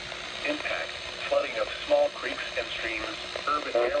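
NOAA Weather Radio's synthesized voice reading a flash flood warning through a small radio speaker.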